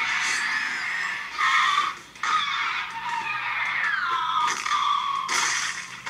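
Soundtrack of an animated dinosaur fight played back through small speakers: thin, high screeching creature calls, one sliding down in pitch in the second half, over a faint steady low hum.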